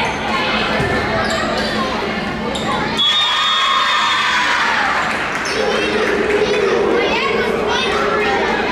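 Volleyball rally in a gymnasium, full of echo: ball hits and players' shouts, then a sharp knock and a referee's whistle about three seconds in, followed by shouting and cheering voices.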